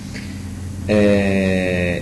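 A man's drawn-out hesitation sound "eh", starting about a second in and held for about a second on a nearly steady, slightly falling pitch.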